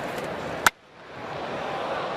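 Ballpark crowd noise, then a single sharp crack of a bat hitting a pitched baseball about two-thirds of a second in, cut off abruptly. The crowd sound fades back in after a brief drop-out. The commentator hears in the crack that the batter didn't get all of the ball.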